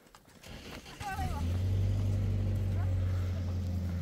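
A low, steady motor hum starts suddenly about a second in and holds without change. Just before it there is a brief high-pitched voice call.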